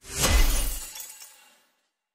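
Designed glass-shatter impact played from UVI Meteor's "Glass Break" preset: a short swell into a crash of breaking glass over a deep low boom. It dies away over about a second and a half.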